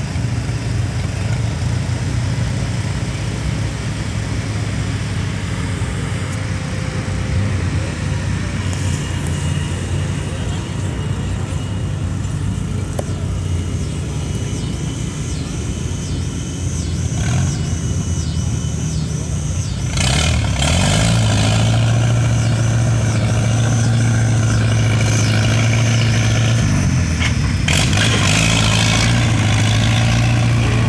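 Antique farm tractor engine idling, then working under load as it pulls a weight-transfer sled; the engine gets steadily louder about two-thirds of the way in as the pull gets under way.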